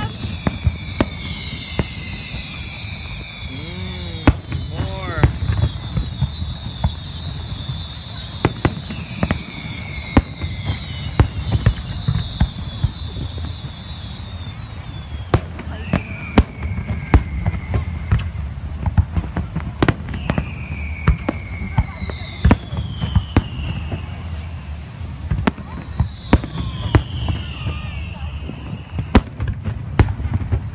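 Aerial fireworks shells bursting in frequent sharp bangs, with a dense crackle through the first half and several falling whistles one to two seconds long.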